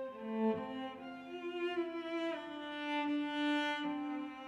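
Background music: slow string music of long held notes, several sounding at once, moving to new notes every second or so.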